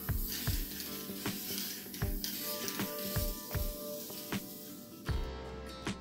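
Background music with a steady beat over the hiss of an aerosol can of spray polyurethane being sprayed, which stops about five seconds in.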